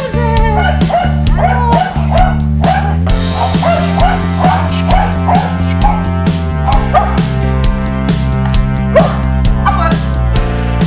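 Background music with a steady beat, over which a five-month-old puppy gives repeated short yips and barks as it jumps at a training tube.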